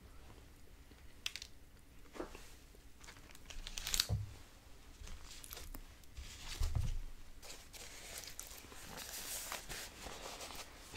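Paper food wrapper and napkin crinkling and rustling in short, irregular crackles close to the microphone while a biscuit is put down and handled, with a couple of soft thumps.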